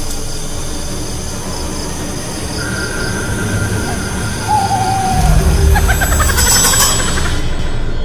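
Horror-film sound design: an owl hoot over an eerie low drone, about four and a half seconds in, then a deep rumble swells up with a harsh, shrill sting about six to seven seconds in.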